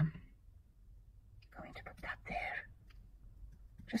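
Soft whispered speech for about a second, midway, with faint paper handling around it as pieces are pressed down by hand.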